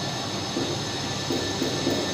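Steady room noise with a low hum, and faint short scratches from a marker writing on a whiteboard.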